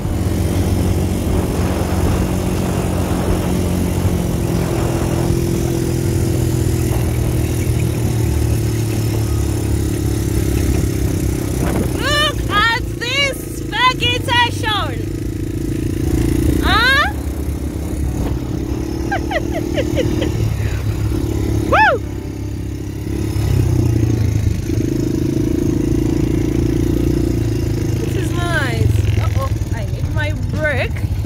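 Quad bike engine running steadily under way, with wind and sand noise. Several high-pitched rising-and-falling cries come in clusters a little before halfway, around two-thirds of the way through, and near the end.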